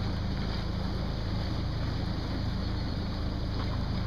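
A small motor running steadily with a low, even hum, with wind noise on the microphone.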